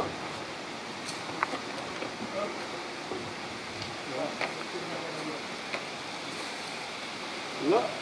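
Steady outdoor background hiss with a few faint, light knocks scattered through it and murmured voices; a man starts speaking near the end.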